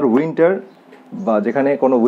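Only speech: a man talking, with a pause of about half a second midway.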